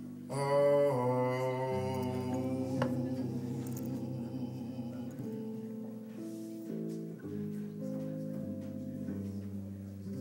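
Live jazz ballad: a male singer holds a sung note for about a second near the start over the band's accompaniment. The band then carries on alone with sustained chords and bass notes.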